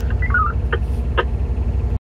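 Cat D11T dozer's C32 V12 diesel engine idling, heard from inside the cab as a steady low pulsing drone. Two short clicks come about a second in.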